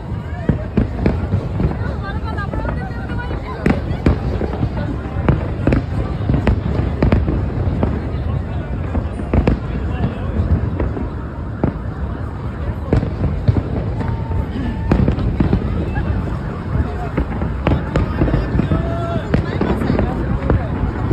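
Aerial fireworks display going off in a continuous barrage: sharp bangs, several a second, over a constant low rumble.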